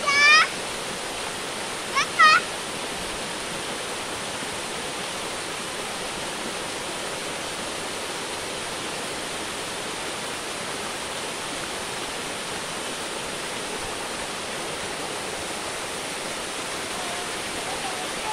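Small waterfall pouring over rocks into a pool: a steady rush of falling water. A short, high-pitched cry comes right at the start and another about two seconds in.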